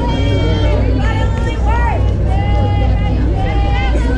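Several voices of players and spectators talking and calling out, some high-pitched, overlapping over a steady low rumble.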